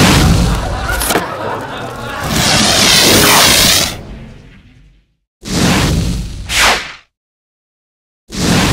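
Title-sequence sound effects: a dense, loud whooshing sound with a warbling sweep that fades away by about five seconds in, then a second short whoosh-and-boom burst that rises at its end and cuts off abruptly about seven seconds in.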